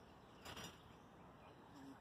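Near silence: faint outdoor background hiss, with one slightly louder brief faint sound about half a second in.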